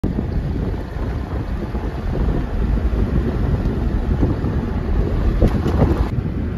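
Wind and road noise inside a moving car: a loud, steady low rumble with wind buffeting the microphone.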